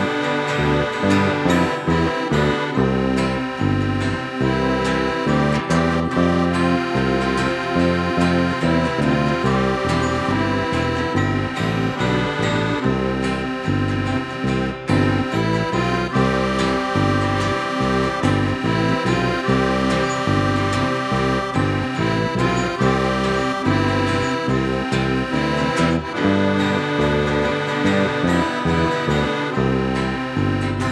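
Live instrumental band music: accordion, acoustic guitar and electric guitars playing a steady tune together over a moving bass line, with long held accordion notes.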